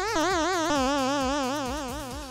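A DIY modular synthesizer's AS3340 oscillator sounds one steady note while the LFO wobbles its pitch. The wobble is saw-shaped, about four swoops a second, and the note sinks a little and fades toward the end.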